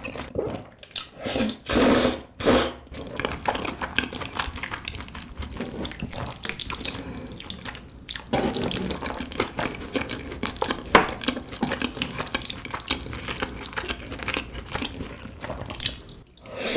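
Close-miked wet eating sounds: three short loud slurps about two seconds in, then continuous sticky chewing and mouth sounds.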